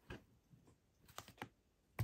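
Near silence broken by four faint, irregular taps and clicks from a hand handling an open zippered sketching kit, the first one a little louder.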